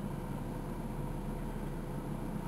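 Steady low engine rumble from slow-moving vehicles, heard from inside a car's cabin.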